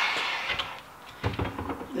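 A bicycle wheel truing stand being handled as a rear wheel is set into it: a scraping slide at the start that fades, then a few light knocks and clunks.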